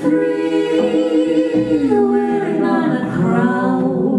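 A woman and two men singing held notes together in close harmony, with little or no instrumental backing; the chords change every second or so.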